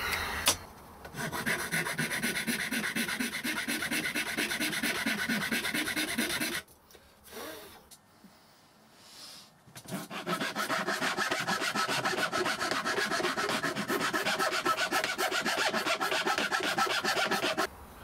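Hand file rasping the sawn edges of a thin plywood cover in quick, even back-and-forth strokes, smoothing the rough-cut shape. The filing comes in two runs, broken by a pause of about three seconds in the middle.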